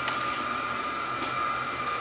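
Steady drone of wood-chip boiler plant machinery running, with a steady high whine and a low hum beneath an even rush of noise.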